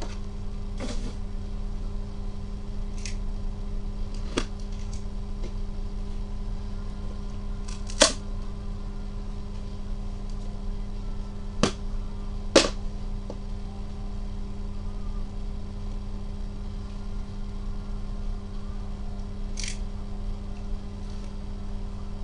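A trading card hobby box being opened and handled by gloved hands: a few sharp clicks and taps at irregular intervals, the loudest three in the middle, over a steady low hum.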